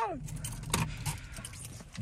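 Light clicking and jingling, like a key ring shaking, over the low steady hum of a car's interior with the engine running. The clicks come mostly in the first second.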